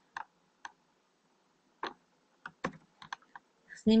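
Computer keyboard keystrokes: about ten short, sharp clicks, irregularly spaced, with quiet gaps between them.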